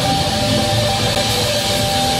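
A band playing a funk-rock song, guitar to the fore, with held notes ringing over the dense backing.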